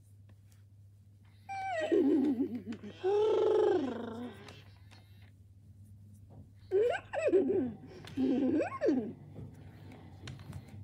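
Hasbro FurReal Friends Cinnamon animatronic pony toy playing its recorded pony vocal sounds in response to a stroke on the cheek, in two bursts: one starting about one and a half seconds in and lasting nearly three seconds, the other about seven seconds in.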